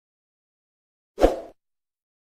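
A single short pop sound effect from a subscribe-button animation, a low thump that dies away within about a third of a second, comes about a second in.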